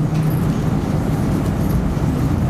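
Steady background noise, a low rumble with hiss, with no distinct events in it.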